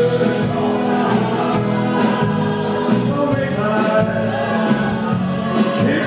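Live band playing with a male lead singer and backing choir, sung into a hand microphone over guitars and drums.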